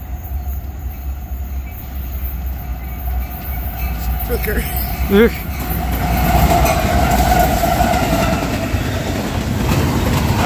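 Norfolk Southern diesel locomotive approaching and passing at speed, its low engine rumble growing louder. From about six seconds in a steady tone rises over it and falls slightly in pitch as the locomotive goes by, and the rolling of double-stack container cars follows.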